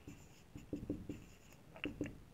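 Marker pen writing on a whiteboard: several short, faint strokes as words are written out.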